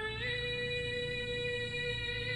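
A singer holding one long, steady note of the national anthem.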